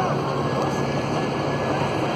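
Steady rolling noise of a hayride wagon moving along a gravel path, with a faint low hum under it.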